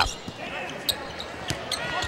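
Basketball dribbled on a hardwood arena floor: about three evenly spaced bounces roughly 0.6 s apart over a low arena crowd murmur.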